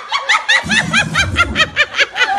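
A woman laughing hard in a rapid run of short, high-pitched bursts, about six or seven a second.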